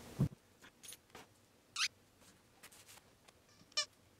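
Squeaky dog toys giving two short high squeaks about two seconds apart, among light rustling and a soft thump near the start as the toys are handled and sorted.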